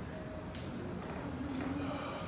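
Room tone of a wood-floored studio with a few light footfalls on the wooden floor and a faint voice near the end.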